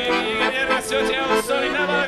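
Accordion playing a lively Odesa klezmer tune live, with a voice singing along over the held chords.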